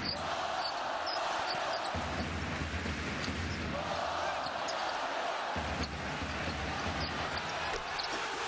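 Live basketball game sound: a ball bouncing on the court over steady crowd noise in the arena, with a few short high squeaks.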